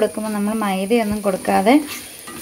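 A woman's voice with long, gliding held notes, over food sizzling and being stirred in an iron kadai.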